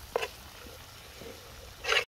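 A fork stirring meat in a metal cooking pot, with two short scrapes, one just after the start and one near the end.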